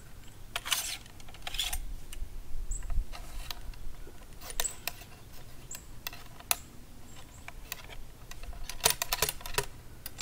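Steel ramrod scraping and clacking in the bore of an 1842 Springfield smoothbore musket as a buck-and-ball cartridge is loaded and rammed down, in irregular bursts of clicks and rasps with the busiest stretches near the start and near the end. The load goes down against powder fouling left in the barrel from earlier shots.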